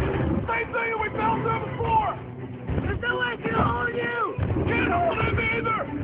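Action-film soundtrack: wordless vocal cries with bending pitch, breaking off every fraction of a second over a steady low rumble, with a short lull a little under halfway through.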